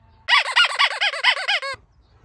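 A dubbed-in comic sound effect: a loud, high-pitched call of about ten rapid rising-and-falling notes, the last one dropping lower, lasting about a second and a half.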